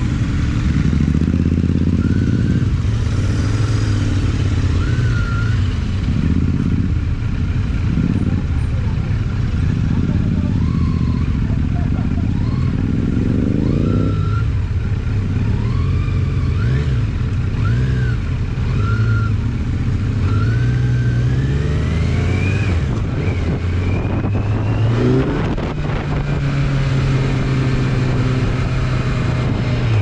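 Motorcycle engines on the move, led by the onboard Kawasaki Z900's inline-four running under way. Its pitch rises as it revs up near the middle and climbs again about two-thirds of the way through, as the bike accelerates.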